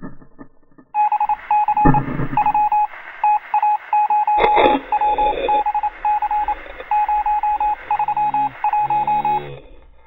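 An electronic beeping tone at one steady pitch, switching on and off in an irregular pattern of short and long beeps like Morse code, starting about a second in and stopping shortly before the end. Two brief knocks or rustles come through early on and midway.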